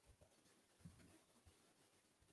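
Near silence: faint room tone with a few soft, low taps.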